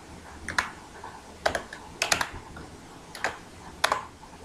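Computer keyboard being typed on: irregular keystroke clicks, several of them in quick pairs.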